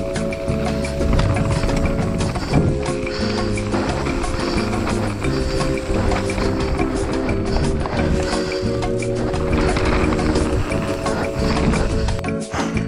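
Background music: held chords changing every two to three seconds over a steady beat.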